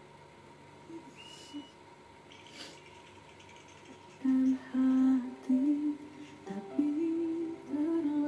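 A woman humming a tune with closed lips, beginning about four seconds in and moving between a few held notes. Before that, only a few faint clicks.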